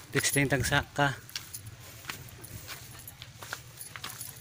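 A man speaks a few words in the first second. Then come faint scattered clicks and rustles over a low, steady hum.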